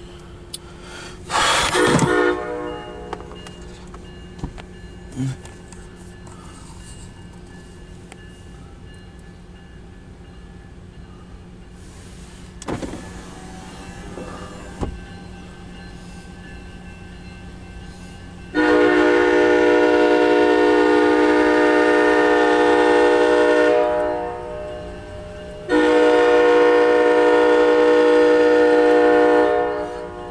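MARC commuter train locomotive horn: a short blast near the start, then two long, loud, steady chorded blasts in the second half as the train approaches.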